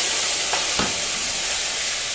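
Rice and seasonings frying in a pot, a steady sizzle, while a metal spoon stirs it, with one sharp knock a little under halfway through.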